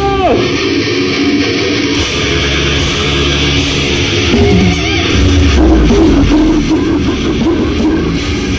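Live death metal band playing loud: heavily distorted electric guitars and drums, with a note sliding down in pitch about four seconds in.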